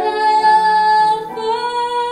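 A woman singing a slow ballad solo, holding one long note and then stepping up to a higher held note a little past halfway.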